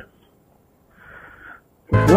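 Near quiet with one faint, brief, breathy hiss about a second in. Upbeat swing-style background music starts right at the end.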